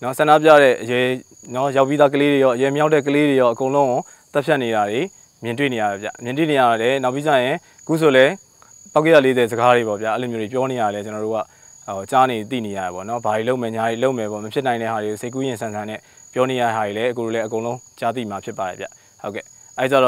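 A man talking in Burmese in phrases with short pauses, over a steady high-pitched insect drone from the vegetation around him.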